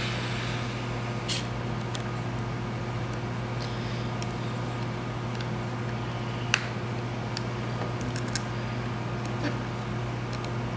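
Small sharp clicks and taps of clear acrylic case pieces being handled and pressed onto a controller, the clearest about six and a half seconds in, over a steady low hum.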